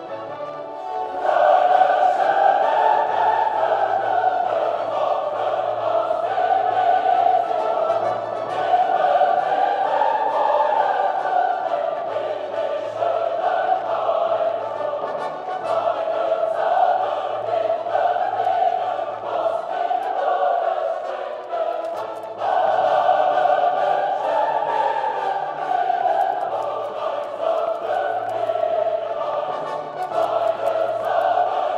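Classical choral music: a choir singing long, sustained phrases that swell and fade, coming in strongly about a second in, with a brief dip about two-thirds of the way through.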